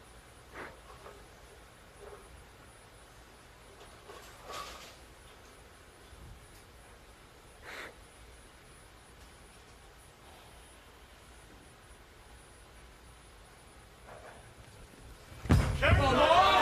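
Hushed bowling-arena crowd with a few faint scattered knocks and murmurs while the bowler sets up. Near the end a sudden heavy thud as the bowling ball is delivered onto the lane, and the crowd breaks into loud shouting and cheering.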